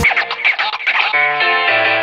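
Instrumental break: the full beat cuts out at the start, leaving a second of sparse, flickering sound. Then an electric bass guitar comes in with sustained notes.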